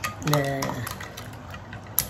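A wire whisk beating eggs in a glass bowl: a quick run of light clicks and taps against the glass, with a sharper click near the end.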